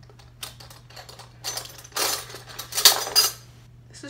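Metal spoons and forks clinking and rattling against each other as a hand rummages through them in a small box. The rummaging comes in bursts, loudest about one and a half and three seconds in.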